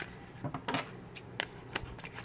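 A few light, scattered clicks and clinks of hard plastic and metal as a small plastic toy shopping basket is turned in the hands and a pair of scissors is picked up.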